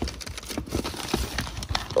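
Plastic packaging crinkling and a cardboard box rustling as a hand digs through a boxed shifter kit: a run of irregular small clicks and crackles.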